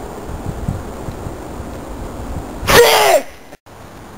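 A person sneezes once, loudly, near the end, the voiced part of the sneeze falling in pitch.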